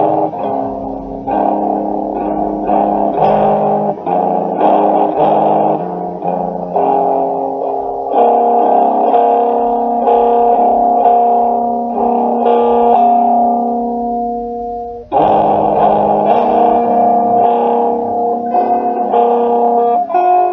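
Guitar music: plucked chords ringing out and changing every second or so. It breaks off briefly about fifteen seconds in, then comes back in.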